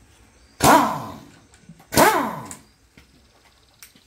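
A dog barking twice, about a second and a half apart, each bark loud and falling in pitch.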